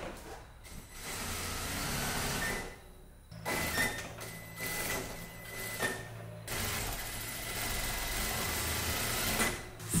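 Sewing machine stitching in runs of a few seconds, with short pauses between them.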